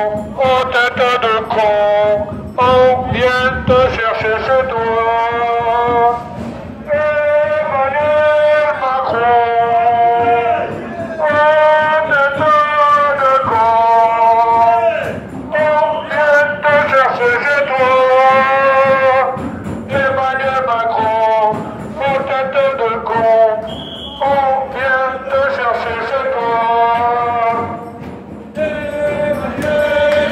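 Crowd of protesters singing a chant together, one melodic sung phrase after another, each lasting a second or two.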